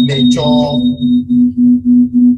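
Electronic beeping: a low tone of one pitch pulsing about three to four times a second, with a thin high tone above it that stops about one and a half seconds in.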